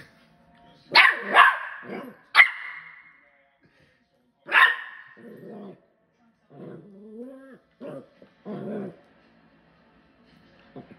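A West Highland White Terrier puppy barking in play: four sharp, loud barks in the first five seconds, then softer, lower, drawn-out growling sounds.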